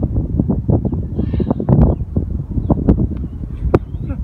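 Wind buffeting the microphone: a steady low rumble with scattered knocks and a sharp click near the end.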